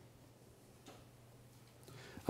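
Near silence: room tone with a faint steady low hum and one faint click a little under a second in.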